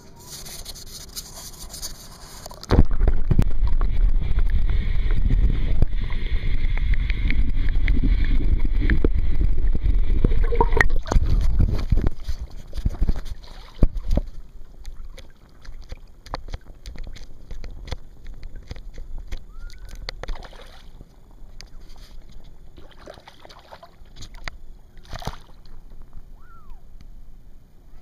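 Water sloshing and gurgling against a waterproof camera held at the surface beside a kayak. It turns loud and muffled suddenly about three seconds in for some ten seconds, then settles to quieter splashing with scattered knocks.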